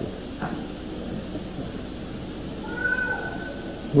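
Steady hiss and room noise of an old lecture recording, with a faint high-pitched call lasting under a second about three seconds in.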